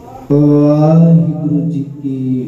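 A man's voice chanting one long, steady held note that comes in about a quarter second in and tails off shortly before the end.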